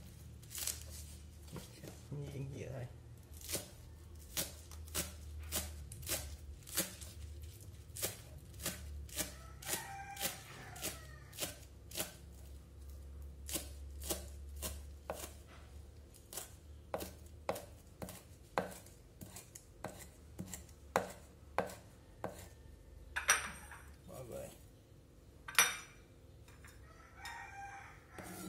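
Kitchen knife chopping green onions on a wooden chopping board: steady, even chops about two a second, with two louder knocks of the blade on the board near the end.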